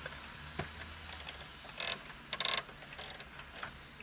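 Plastic clicks and short bursts of rapid ticking from an old car cassette radio's knobs and buttons being worked by hand: a single click about half a second in, then two brief ratcheting runs around the middle.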